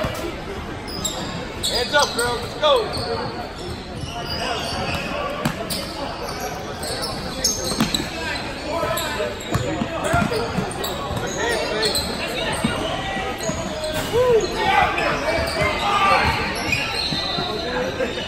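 Basketball bouncing on a hardwood gym floor as it is dribbled, with scattered knocks and indistinct voices from players and spectators in the large hall.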